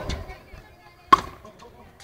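A frontenis ball hit in play: one sharp crack about a second in, the loudest sound, after a fainter knock at the start.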